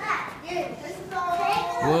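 Young children's voices chattering and calling out. Near the end a stronger adult voice cuts in.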